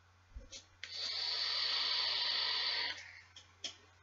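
A long drag on a Griffin rebuildable tank atomizer: about two seconds of steady airy hiss as air is pulled through the atomizer's airflow while the coil vaporizes e-liquid. A few small clicks come just before and just after the drag.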